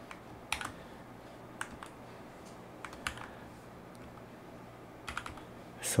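Computer keyboard keys being pressed, a few scattered single clicks with a short burst of keystrokes near the end.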